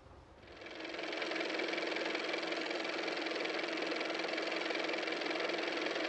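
Old-time car engine sound effect running steadily, fading in about a second in.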